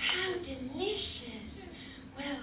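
A woman's voice speaking into a stage microphone, with no clear words.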